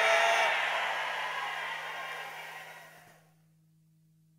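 A church congregation calling out together, many overlapping voices in a reverberant hall. The voices fade out smoothly and are gone about three seconds in, leaving a low steady hum.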